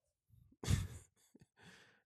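A man's sigh: one loud breathy exhale about half a second in, followed by a couple of softer breaths.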